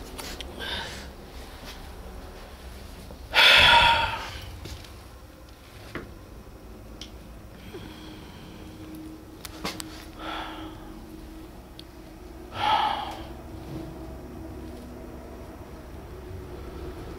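A person breathing out heavily: four breathy exhalations, the loudest a few seconds in, with a faint steady low hum in the second half.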